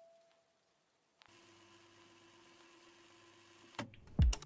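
Near silence between pieces of background music: a last mallet note fades out, then a faint steady hum comes in about a second later, with a brief click near the end.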